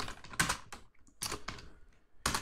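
Computer keyboard typing: a handful of separate keystrokes spread out with short gaps between them.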